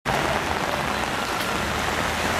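Heavy rain falling steadily onto a flooded street.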